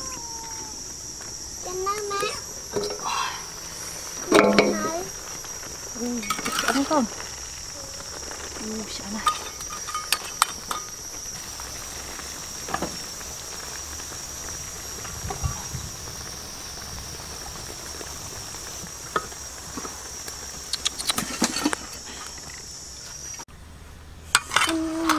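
Crayfish cooking in a wok over a wood fire, under a steady high-pitched hiss or chirr that cuts off near the end. A few short clatters and brief pitched calls come through now and then.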